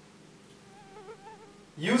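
Quiet room with a faint wavering buzz for under a second near the middle, then a man's voice starting near the end.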